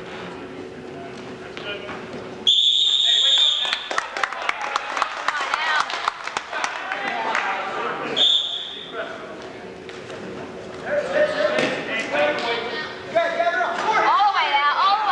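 Referee's whistle: one shrill blast of about a second, then a second, shorter blast about six seconds later, as the wrestlers face off to restart. Between the blasts come many sharp claps and knocks with voices.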